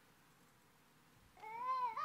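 Near silence, then about one and a half seconds in a single high, drawn-out vocal sound whose pitch rises and falls, as the volunteer video starts playing.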